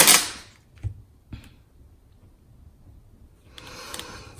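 Plastic masking tape being handled: a short noisy rasp at the start, a couple of faint taps, then near the end a rising rasp of the tape being drawn off its roll.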